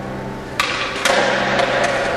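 Skateboard deck and wheels hitting concrete twice, a sharp pop and then a landing with a rolling rattle, followed by two lighter clicks, over background music.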